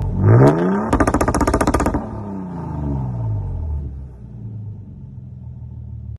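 2022 Toyota Tundra's twin-turbo V6 exhaust revved: the pitch climbs quickly and drops back, then comes a rapid stutter of sharp pops for about a second, and the revs fall away to a steady idle.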